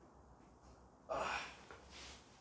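A person's sharp gasping breath about a second in, fading over half a second, with a smaller breath near the end: a reaction to deep-tissue pressure being worked into the thigh above the knee.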